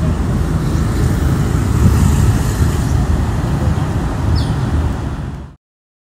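Loud, steady low rumble of outdoor background noise, likely from the phone recording at the scene, with no distinct events in it; it cuts off abruptly about five and a half seconds in.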